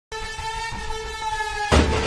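Soundtrack intro: a held horn-like tone, steady and slightly dipping in pitch, is cut near the end by a sudden loud hit with deep bass as the music kicks in.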